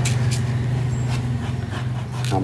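A hand raking through clay cat-litter pellets, giving short grainy rustles a couple of times a second as it searches the litter for a kitten's droppings. Under it runs a steady low hum.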